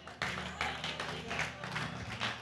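Scattered congregation clapping and applause over soft background music, the clapping starting a moment in.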